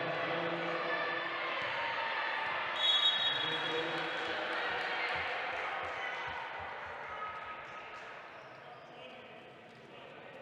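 Sports hall sounds of a wheelchair basketball game: players and spectators calling out, a short referee's whistle about three seconds in, then a basketball bouncing on the wooden court several times.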